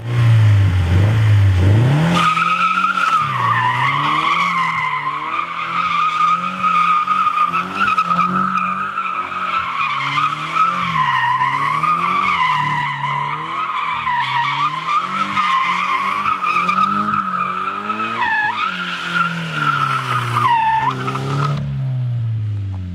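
Toyota GT86's flat-four engine revving up as the car starts a donut. Its rear tyres then squeal without a break while the engine rises and falls with the throttle. The squeal drops in pitch twice near the end.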